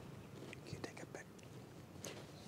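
Faint speech: a few quiet, half-whispered words.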